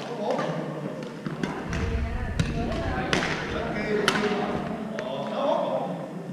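Badminton rackets hitting a shuttlecock during rallies: a series of sharp smacks echoing in a large gym hall, over background voices.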